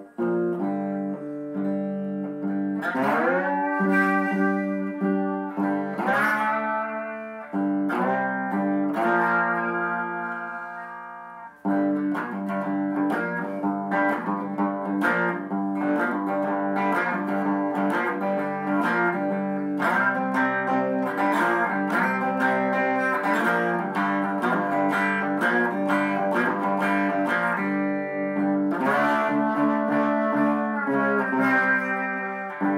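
Three-string pick axe handle guitar tuned GDg, played with a slide: notes slid upward in pitch a few seconds in and again around six seconds, held notes dying away, then after a short break steady rhythmic picking over a droning low string.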